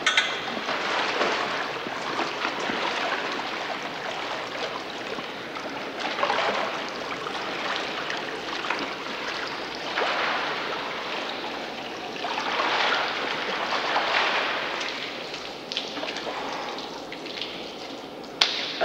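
Swimming-pool water splashing and streaming in uneven swells as a swimmer is helped out of the pool.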